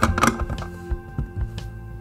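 Plastic ball-cluster puzzle pieces clicking and knocking against each other and the tray as they are set into a pyramid: a quick run of clicks at the start, then a couple of single knocks. Soft background music plays underneath.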